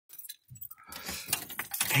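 A quick run of light clicks and jingling rattles, growing busier and louder toward the end, over a faint low rumble.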